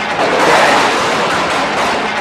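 Loud, steady rushing noise of a rainstorm sound effect, heralding the flood.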